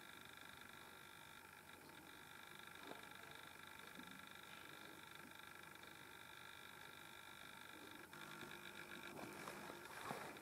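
Near silence: a faint, steady high electronic whine, with a faint click about three seconds in and some light handling rustle near the end.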